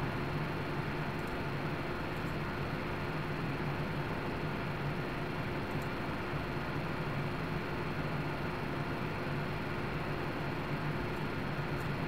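Steady background hum and hiss with a few thin steady tones, with a few faint clicks now and then.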